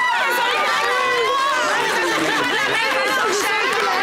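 Several people talking over one another at once, a continuous overlapping chatter of voices.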